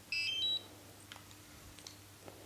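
Short electronic power-on chime from the DJI Mavic Air kit: a quick run of a few stepped high beeps lasting about half a second, followed by a couple of faint clicks.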